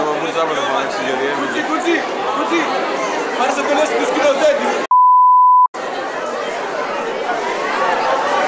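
Many people talking at once in a crowd, a steady babble of voices. A little past halfway the voices drop out completely for under a second while a single steady high beep sounds, the loudest sound here, before the babble resumes.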